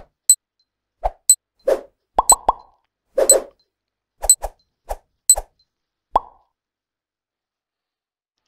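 A run of about fifteen short, sharp pops and clicks at irregular spacing, some in quick pairs, stopping about six seconds in.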